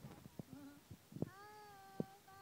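A faint, drawn-out high call with a steady pitch, starting a little past a second in, among scattered soft clicks and knocks.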